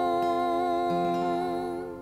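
The final held note of an acoustic folk song: a long sung note with fiddle and acoustic guitars under it, holding steady, then fading away near the end.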